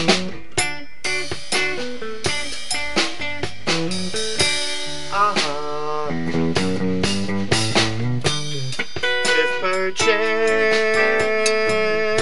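Band playing an instrumental passage: electric guitar over bass and a drum kit, with a long held note near the end.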